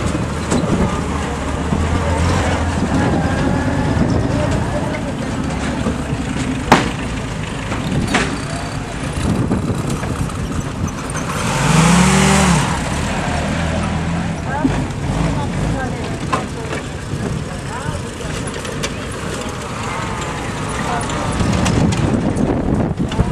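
WWII military vehicles (a Dodge weapons carrier and Willys-type jeeps with their four-cylinder engines) driving slowly past one after another, engines running at low speed. The sound is loudest about halfway through, as a jeep passes close by.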